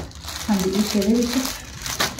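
Clear plastic packaging on folded fabric suits crinkling as it is handled, with a short voiced murmur in the middle.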